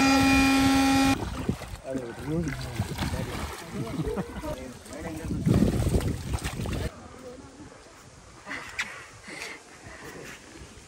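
Electric air blower running steadily while it inflates a water walking ball, cutting off suddenly about a second in. Afterwards, people's voices and handling noise.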